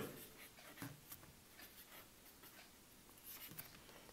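Near silence with faint scratching of a felt-tip pen writing on paper: a few soft short strokes about a second in and again near the end.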